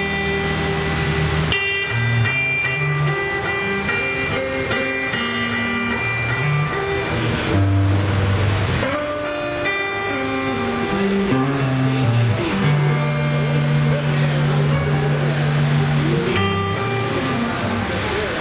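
Live blues band playing an instrumental passage: electric guitar lines over electric bass, drums and keyboard, with bass notes changing every second or so.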